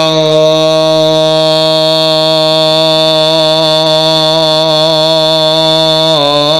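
A male qari chanting the durood (salawat on Muhammad), holding one long, steady note for about six seconds.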